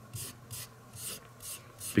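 Fingertip rubbing weathering pigment powder into a textured model cobblestone road surface, pressing it into the cracks: a quick series of short scratchy rubbing strokes, about three a second.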